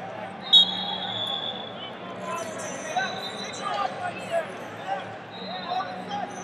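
Busy wrestling-hall crowd chatter, with a shrill whistle blast starting sharply about half a second in and holding for about a second. Shorter whistles come later, and there are a few short knocks.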